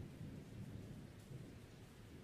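Faint, uneven low rumble of a hand-held camera being moved about, with no other distinct sound.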